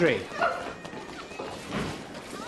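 The end of a man's shout, then a short animal call about half a second in, followed by a few faint rising squeaks.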